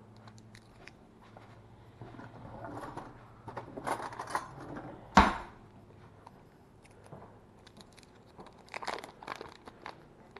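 Paper wrapper on a stick of butter crinkling and tearing as it is peeled open by hand, in two spells of rustling. A single sharp knock about five seconds in is the loudest sound.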